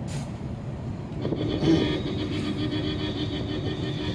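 Low road rumble inside a moving car, then about a second in a long, steady horn blast starts and holds on.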